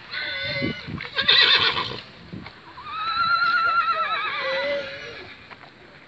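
Horse whinnying: a harsh squealing call in the first two seconds, then a long quavering whinny that falls in pitch as it ends.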